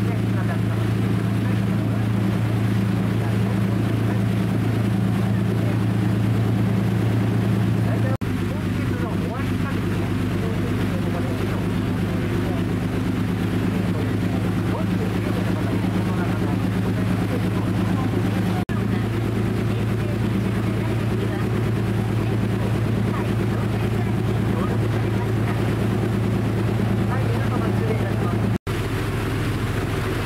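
A cruise boat's engine drones steadily with a low hum, over the rush of water and wind. The sound breaks and shifts abruptly about 8, 19 and 29 seconds in, at cuts in the recording.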